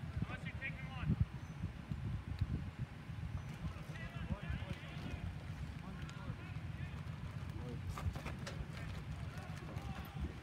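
Faint voices of players and spectators calling out across an open field, over a steady low rumble of wind buffeting the microphone, with a few light knocks about eight seconds in.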